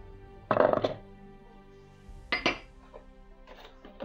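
Cubes of cheddar cheese dropped by hand into a plastic food-processor bowl: two short knocks, about half a second in and just after two seconds, over background music.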